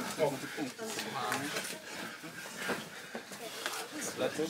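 Indistinct background voices of people in the room talking, with a few faint knocks scattered through.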